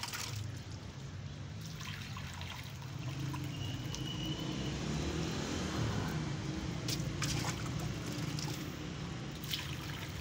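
Liquid trickling over a steady low rumble, with a few sharp clicks about seven seconds in and again near the end.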